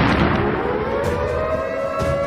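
Air-raid siren winding up from a low pitch and settling into a steady wail, over the fading rumble of a boom.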